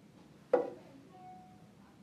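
One sharp knock with a short ringing decay, about half a second in: a hard part or tool striking the label printer while it is being worked on.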